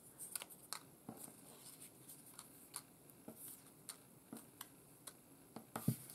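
Faint rustling and light taps of small paper and cardstock ephemera pieces being picked up and gathered in the hand, with a slightly louder tap just before the end.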